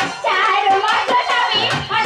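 Live Manasa jatra folk song: a singer's voice bending through ornamented notes over quick hand-drum and percussion strokes.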